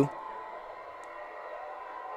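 Quiet, steady background noise on the commentary broadcast feed, with a thin, faint, constant whine running through it and a tiny click about a second in.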